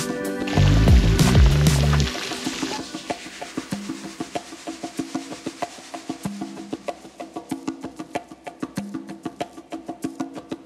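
Background music: a loud section with heavy bass stops about two seconds in, leaving a light, ticking percussion beat over soft notes.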